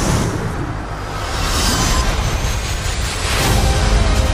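Film trailer sound mix: a dramatic score under heavy low booms and whooshing swells, with a last rising whoosh near the end.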